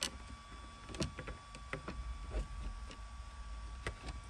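Scattered faint clicks and taps of a stiff carbon fiber console cover overlay being handled and fitted against a car's plastic center console trim, several close together about a second in and one more near the end.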